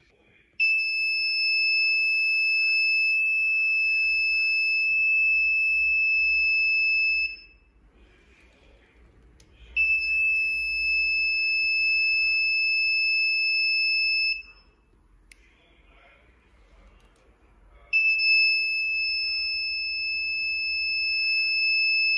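Electronic buzzer sounding a steady high-pitched tone in three long blasts of about five to seven seconds each, set off when the flame sensor detects a lighter's flame.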